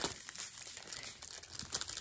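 Clear plastic packaging crinkling in irregular crackles as it is handled.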